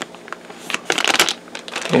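Clear plastic bag around a plastic model-kit sprue crinkling and rustling as it is handled, in a run of short crackles that is busiest around the middle.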